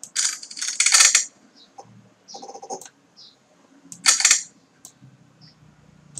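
Rapid clicking and clatter from a computer keyboard and mouse in three short bursts: the first about a second long at the start, a shorter, duller one about two and a half seconds in, and another about four seconds in.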